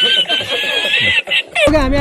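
A man's high-pitched laughter from an inserted meme clip. It cuts off suddenly about one and a half seconds in, and a voice then speaks over low road noise.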